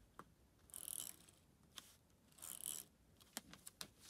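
Correction tape roller drawn across a paper planner page, laying tape over printed text: two faint scratchy strokes, one about a second in and one about two and a half seconds in, with a few small clicks from the dispenser.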